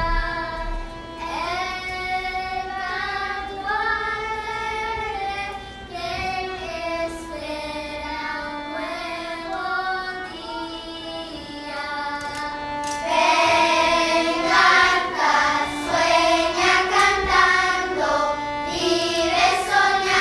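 A youth string orchestra playing a slow, sustained melody, with the sound growing louder and fuller about two-thirds of the way through.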